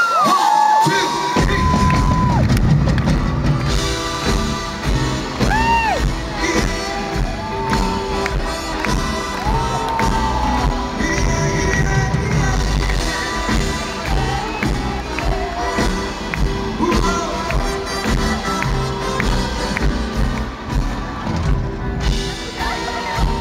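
Live band starting a swing number about a second in, with a heavy bass beat, and an arena crowd cheering and whooping over it, heard from among the audience.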